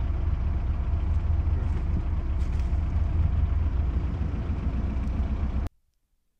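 Steady low rumble with a fainter even hiss above it, cutting off abruptly near the end.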